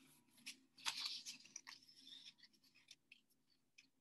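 Faint rustling and soft crackling of construction paper strips being folded and creased over each other by hand, coming in short irregular bursts, the loudest about a second in.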